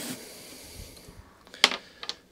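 Small nut being worked off a lawnmower's exhaust cover with a hand tool: a faint hiss for the first second, then one sharp click about one and a half seconds in.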